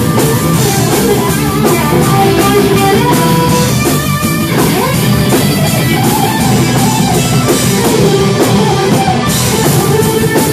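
Live rock band playing loudly: guitar over a drum kit with a steady beat.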